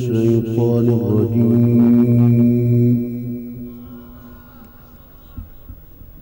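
A male Qur'an reciter's voice holding one long, ornamented melodic note. The note ends about three seconds in and dies away over about a second, leaving only low background noise.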